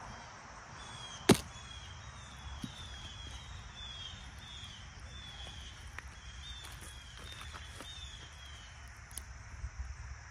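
A single sharp chop about a second in as a machete strikes into a Jubilee watermelon, splitting it open. Behind it a bird repeats a string of short falling whistles.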